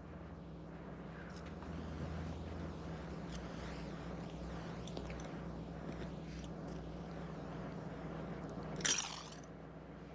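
A low steady hum with a faint scraping, rustling texture, then one sudden sharp crack or clatter about nine seconds in.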